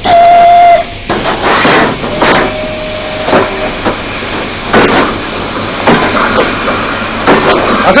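Steam locomotive whistle sounding one loud, steady note for under a second, then steam hissing in uneven bursts, with a fainter whistle tone about two seconds in.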